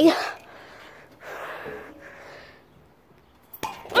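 A child's long, heavy breath of effort while hanging from metal monkey bars, then a single sharp knock near the end as the attempt fails.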